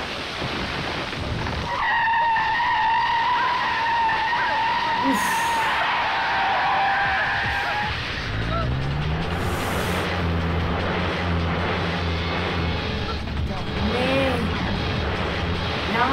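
Film car-chase soundtrack: vehicles racing and skidding, with a long high squeal a couple of seconds in, then an engine revving up at about the middle and holding a low drone, over background music.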